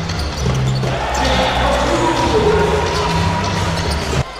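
Live basketball game sound in an arena hall: the ball bouncing on the hardwood court amid crowd noise, over a steady low drone, with the crowd noise swelling about a second in.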